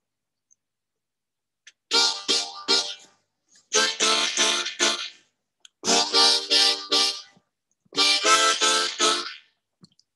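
Lee Oscar harmonica in D natural minor playing a short reggae tune: four phrases of three or four short chords each, starting about two seconds in.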